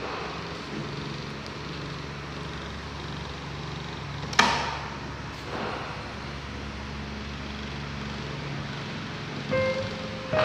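Steady low hum with faint background music, and one sharp knock about four and a half seconds in from a child's hand slapping a treadmill belt, followed by a softer knock a second later.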